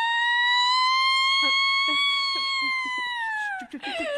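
A woman's long, high-pitched crying wail, held for about three and a half seconds with a slight rise in pitch, then sliding down near the end into a wavering sob.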